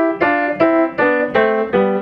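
Grand piano played by the left hand alone: a broken-chord figure of single notes, about three a second, stepping down the keyboard.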